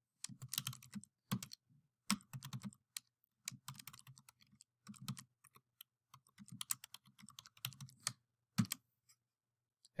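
Typing on a computer keyboard: a quick, irregular run of keystrokes that stops about a second before the end.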